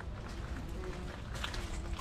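Footsteps crunching on a gravel path, starting about one and a half seconds in, over a steady low rumble, with faint voices in the background.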